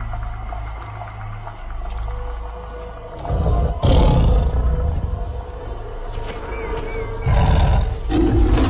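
A big cat's roar sound effect over intro music, deep and rumbling, swelling loud about three seconds in and again near the end.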